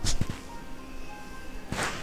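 Faint background music with two short swishes, one at the start and one near the end.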